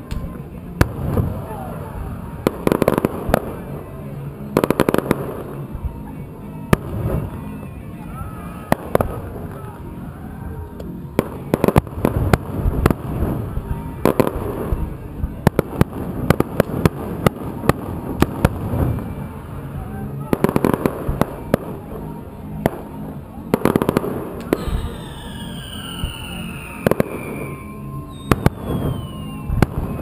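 Aerial fireworks shells bursting one after another, a steady run of sharp bangs and crackles with several louder clusters. Near the end come a few long falling whistles.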